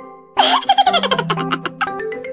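A burst of high-pitched laughter, a quick run of short bursts falling in pitch, lasting about a second and a half. Background music breaks off just before it and comes back as it ends.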